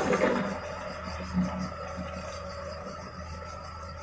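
Tracked hydraulic excavator's diesel engine running steadily as its bucket digs into a pile of loose soil, with a sharp knock at the very start and a duller thud about a second and a half in. A steady high buzz sits over the engine.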